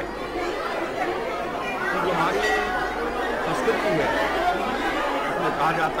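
Several people talking at once: overlapping chatter of a crowd of voices, no single speaker standing out.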